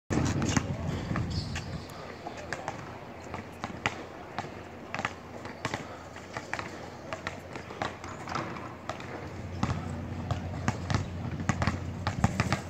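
Basketballs being dribbled on a hard outdoor court: many sharp bounces at an uneven rhythm, with more than one ball going at once.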